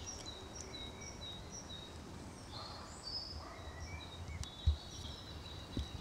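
Songbirds singing faintly: a run of short high notes repeated about three times a second, then other brief scattered chirps. A single soft low thump comes about two-thirds of the way through.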